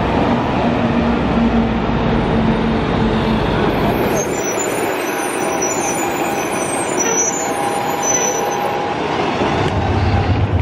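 City transit buses running in downtown street traffic: a steady engine drone for the first few seconds, then an articulated bus going by close with a high whine over lighter engine noise.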